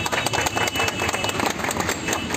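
A small group of people clapping their hands, a quick irregular patter of claps, with voices and a vehicle engine running underneath.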